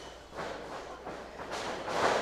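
Small crowd cheering and calling out, swelling toward the end, over a faint low hum.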